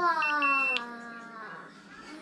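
Electric scooter's dashboard beeper sounding as the scooter is switched off by its power button: two short high beeps, then one longer beep. The beeps sit over a louder, drawn-out voice that slides down in pitch and fades.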